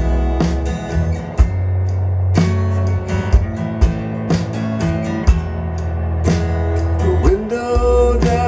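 Acoustic Research Classic 30 floor-standing loudspeakers playing a country-style song: singing over guitar, bass and drums, with a drum hit about once a second.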